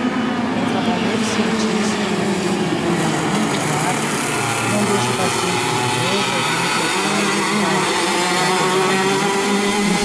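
A motor running steadily, its pitch wavering slowly up and down, under a woman's voice.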